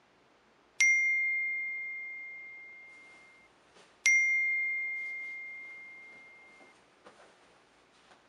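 Phone notification chime: two identical bright dings about three seconds apart, each ringing out and fading over two to three seconds. Faint rustling of bedding near the end.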